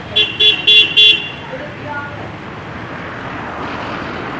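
A vehicle horn tooted four times in quick succession about a second into the clip, over steady street traffic noise.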